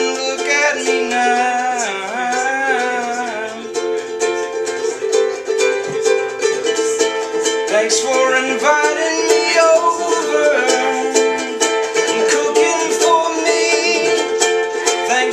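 Ukulele strummed in a steady rhythm of chords.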